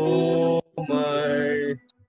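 A man singing two long, steady held notes, one after the other with a short break between, in the manner of sargam practice in a singing lesson.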